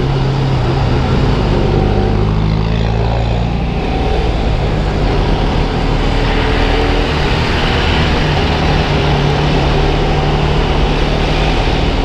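Motorcycle engine running at road speed, its pitch drifting up and down a little with the throttle, under steady wind rush and tyre noise on a wet road.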